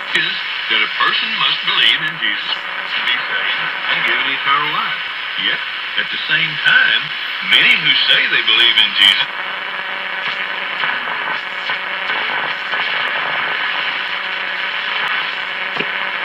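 A 1937 Philco 37-640 radio playing through its speaker while being tuned: a thin, muffled broadcast voice under static for about the first half, then steady hiss between stations.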